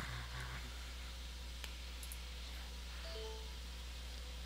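Low steady electrical hum under a quiet screen recording, with a single mouse click about one and a half seconds in. About three seconds in comes a short, faint electronic alert chime as a security-software prompt about an autostart entry pops up.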